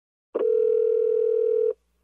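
A single steady electronic tone at one pitch, like a telephone line tone, lasting about a second and a half and starting and stopping abruptly.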